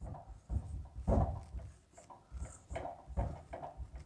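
Marker pen writing on a whiteboard: faint, short, irregular squeaks and scratches as the strokes of a word are written.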